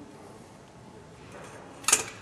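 Quiet room tone, then a single sharp metallic clink near the end as the cable crossover's handle is taken from the high pulley.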